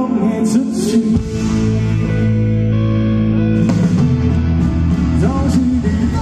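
A rock band playing live on an outdoor stage, with guitars, bass and drums under a singing voice, heard through the PA from within the crowd.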